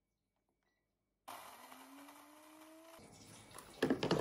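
A kitchen coffee maker in use. After a silent start comes a hiss with a rising tone for about a second and a half, then a short clatter of plastic and glass parts near the end as the machine is handled.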